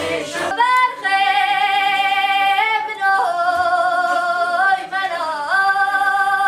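A woman singing solo and unaccompanied, holding long, drawn-out notes that step up and down in pitch, with the first note sliding up about half a second in.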